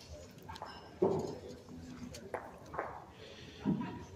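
Quiet background voices, with a sharp knock about a second in and a few fainter sounds after it.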